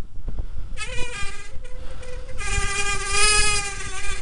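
Bicycle brakes squealing in a high, steady whine over road and wind rumble. The squeal comes in about a second in, breaks off briefly, then gets louder and drops slightly in pitch about halfway through.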